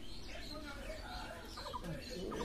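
Domestic fowl clucking in short runs of quick notes, with voices in the background.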